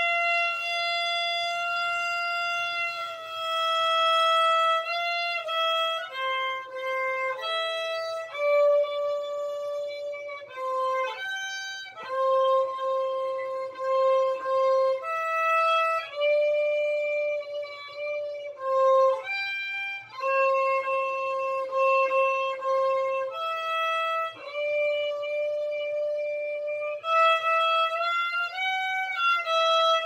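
Unaccompanied violin playing a slow melody, one bowed note at a time, with long held notes of a second or more.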